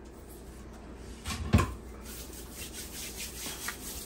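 Light rubbing and handling noises, with one short knock about a second and a half in.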